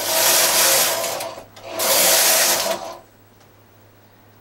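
Carriage of a Singer Mod. 155 knitting machine pushed across the needle bed twice, knitting two rows: two runs of a steady sliding, mechanical noise, each a little over a second long, with a short pause between them.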